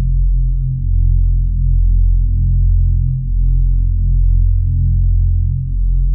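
Ambient electronic music: a deep, sustained synthesizer drone with everything in the bass, swelling and dipping every two to three seconds, without drums.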